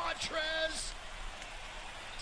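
Basketball game broadcast audio: a few words of commentary, then a steady hiss of arena crowd noise.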